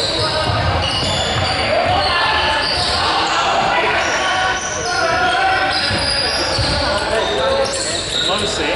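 Basketball bouncing on a hardwood gym floor, irregular thumps echoing in a large hall, with players' voices and calls.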